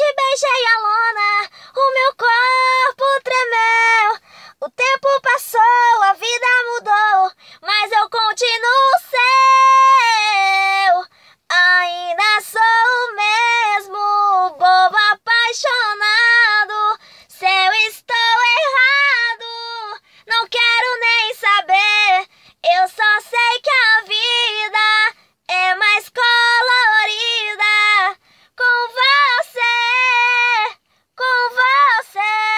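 A woman singing a sertanejo love song unaccompanied, one voice in held, sliding phrases broken by short breaths.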